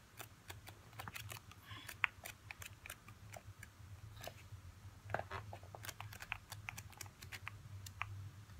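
Pages of a planner sticker book riffled quickly under the thumb: a fast, irregular run of light paper flicks and ticks, over a faint steady low hum.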